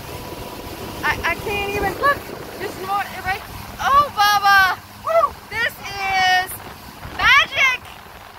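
Excited, high-pitched squeals and cries from a person, a string of short ones with a sharp rising shriek near the end. Underneath runs the steady noise of an outboard motor running at speed and its churning wake.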